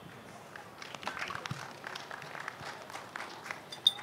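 Faint, scattered applause from an audience, starting about half a second in.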